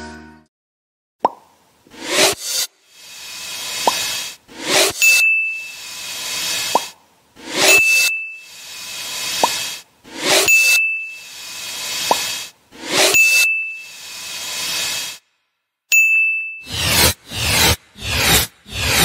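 Video-editing sound effects: a series of whooshes, with a short bright ding about every two and a half seconds (five in all), marking checklist items being ticked off. There is a single click about a second in, and a quicker run of whooshes near the end.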